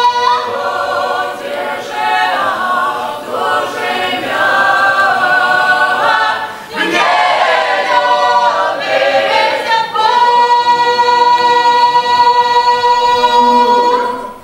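Mixed ensemble of men's and women's voices singing a Belarusian folk song a cappella, moving through several short phrases. It ends on a long held chord over the last four seconds, which the singers cut off together.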